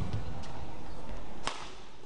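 A badminton racket hitting a shuttlecock once, a sharp crack about one and a half seconds in that rings briefly in the hall, over a steady background of arena noise.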